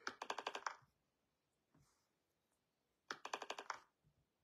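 Two short bursts of rapid, evenly spaced crackling clicks, about ten a second: one at the start and one about three seconds in, with near silence between.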